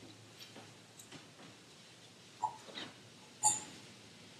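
Faint handling noises at an altar: small clicks and knocks, then two light clinks of metal or glass vessels, the louder and more ringing one about three and a half seconds in.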